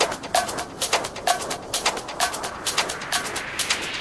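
Breakdown in an electronic dance track with the bass drum dropped out. Crisp percussion hits about twice a second, each with a short repeating pitched sample, and a rising noise sweep builds up over the second half.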